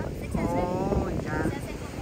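Voices talking over a steady rumble of wind buffeting the microphone and ocean surf breaking on the beach.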